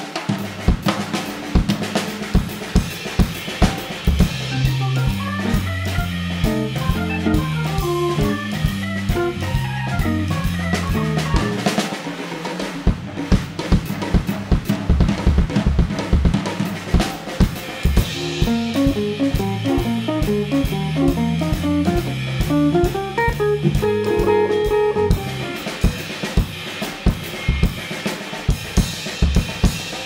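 A jazz drum kit played live and busily on snare, bass drum and cymbals. The organ and guitar join in twice for several stretches, with a low bass line and melody notes, as the drums trade phrases with the band.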